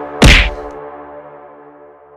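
A single loud, dubbed-in hit sound effect, a whack with a deep thump, about a quarter second in, as a pistol is struck against a man's head; a ringing tone follows and fades away.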